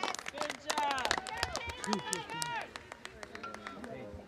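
High voices shouting and calling out on the field, over many sharp clacks of field hockey sticks during a scramble in front of the goal. Both die down over the last second or so.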